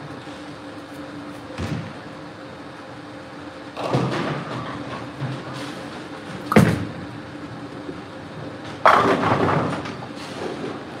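A bowling ball delivered onto a wooden lane: a sharp, loud thud as it lands about six and a half seconds in, then roughly two seconds later a crash of pins being struck. Earlier there is a thump and a short rumble from the alley.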